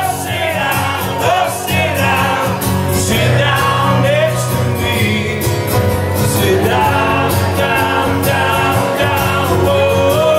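A live acoustic duo playing: two acoustic guitars strummed steadily, with male singing into microphones over a PA.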